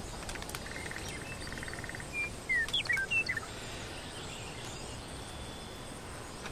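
Forest ambience: a steady soft hiss, with a short buzzy trill about a second in and a quick run of bird chirps, short slurred notes, near the middle that are the loudest sound.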